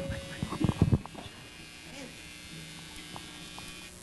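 A quick cluster of knocks in the first second, then a faint, steady electrical buzz.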